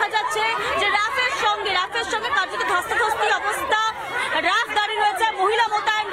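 Several people talking loudly at once, their voices overlapping.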